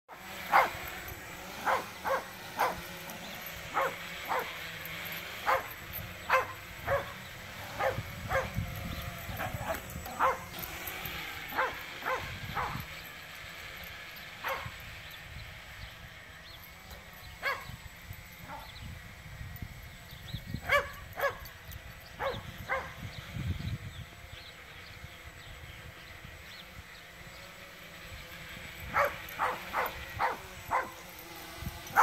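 A Jack Russell terrier barking in short, sharp barks again and again in irregular bursts, excited by a quadcopter flying overhead. The barking pauses briefly in the middle and again near the end. The drone's propellers make a faint steady whine underneath.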